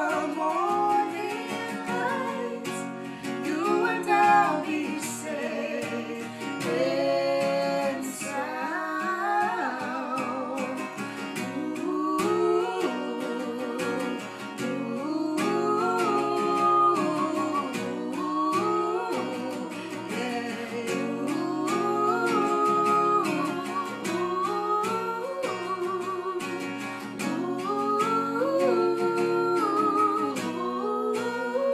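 A man and a woman singing a slow duet together over a played acoustic guitar.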